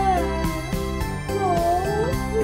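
Keyboard music with a steady beat, over which a high voice wails in long wavering, swooping glides, like crying.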